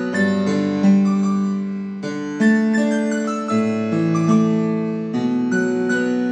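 Yamaha PSR portable electronic keyboard played in a piano voice: sustained left-hand chords under a right-hand melody, with new notes struck every half second or so.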